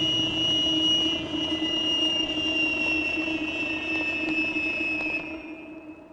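A steady droning noise with high whining tones that sink slowly in pitch, fading out near the end.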